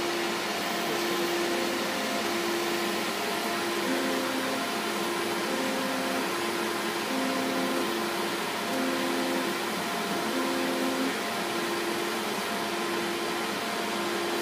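VersaLaser laser cutter at work cutting foam board: a steady rush of air from its fume filter, with the carriage's stepper motors humming in short tones that change pitch each time the head moves to trace another line.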